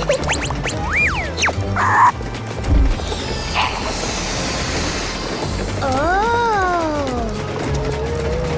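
Cartoon background music with sound effects over it: a quick rising-and-falling pitch glide about a second in, a short noisy burst and a thump a moment later, and a pitched sound that rises and then falls near the end.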